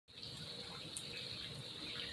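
Steady, faint hiss of rain falling around an open shelter.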